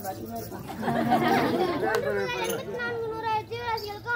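People talking, with several voices overlapping at times.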